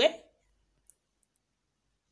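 Near silence after a spoken word ends, broken by one faint, brief click a little under a second in.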